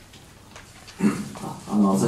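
Quiet room tone for about a second, then a man's voice starts speaking.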